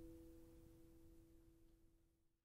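The last notes of a Gibson AJ acoustic guitar's final chord ringing out, two steady notes slowly dying away to near silence.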